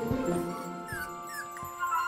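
A puppy whimpering in two short, rising squeaks about a second apart, over soft background music with held notes.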